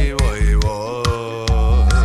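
Reggae dub music: the bass and drums drop out while a long wordless vocal note slides and then holds with a slight waver. The deep bass line comes back about one and a half seconds in.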